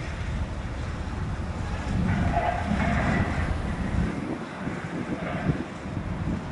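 Cessna 172's piston engine at low landing power as the plane touches down on a grass runway and rolls past, growing louder in the middle and easing after about four seconds. Wind buffets the microphone throughout.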